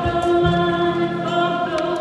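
Choir singing a hymn in held notes that step to new pitches every half second or so, sung during communion.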